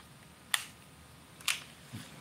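Two sharp clicks, about half a second in and again about a second later, as a baitcasting reel is handled and seated on a fishing rod's reel seat.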